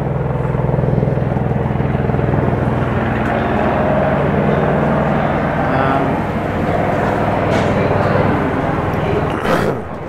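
An old TITAN traction freight elevator, said to be about a century old, running: a steady low hum from its electric hoist machine as the open car travels between floors, with a short sharp noise near the end.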